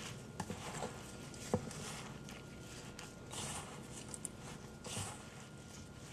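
Gloved hands squeezing and kneading moist seitan sausage dough in a stainless steel bowl: faint squishing and rustling with scattered soft clicks, the sharpest about one and a half seconds in.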